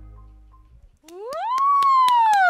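The final chord of an electric guitar and bass rings out and fades away. About a second in, a drawn-out "wow" starts, rising in pitch, over steady hand clapping.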